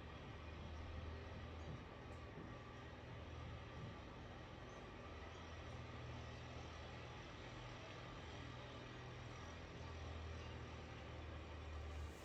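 Quiet room tone: a faint low hum that swells and fades unevenly, with no distinct events.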